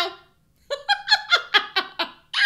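A woman laughing: a quick run of about six short bursts, each falling in pitch, starting after a brief pause.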